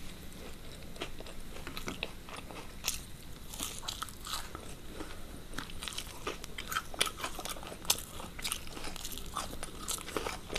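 Close-miked crunching and chewing of crisp fried onion ring pakoras, with irregular sharp crunches as the battered rings are bitten and chewed.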